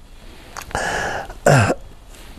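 A man coughs twice into his hand: a longer cough about three-quarters of a second in, then a short sharp one half a second later.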